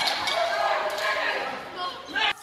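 Shouting voices of people brawling in the street, picked up from a window above, with a few sharp knocks among them.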